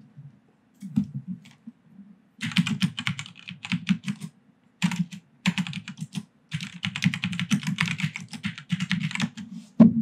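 Typing on a computer keyboard: a few taps about a second in, then quick runs of keystrokes with short pauses until near the end.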